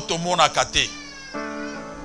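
Sustained background music chords, with a new chord coming in about one and a half seconds in. A man's preaching voice sounds over the music in the first second, in a drawn-out, pitch-gliding exclamation.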